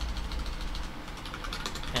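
Computer keyboard typing: a run of quick key clicks in the second half, over a low rumble that is loudest near the start.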